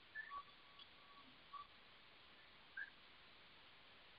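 Near silence: room tone with a few faint, brief chirps.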